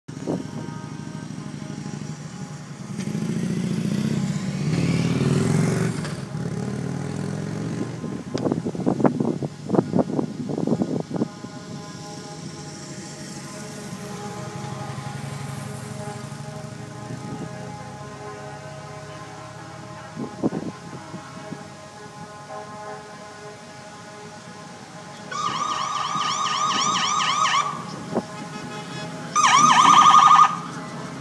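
Motor vehicles passing on the road, with a deeper engine rumble a few seconds in and a quick run of sharp engine sounds around the ten-second mark. Near the end an emergency-vehicle siren sounds in two short warbling bursts, the first about two seconds long, the second about one; these are the loudest sounds here.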